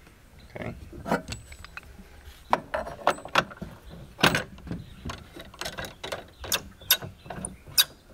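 Irregular sharp clicks and knocks from handling a sliding compound miter saw with its motor off: the saw head lowered onto the board and the board shifted against the metal fence, about a dozen taps spread unevenly through the few seconds.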